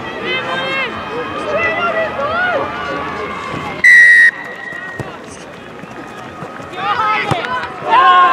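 Referee's whistle, one short, loud, high blast about four seconds in, signalling the kick-off, over shouting voices of players and spectators. About a second later comes a brief thud, fitting the ball being kicked off the tee.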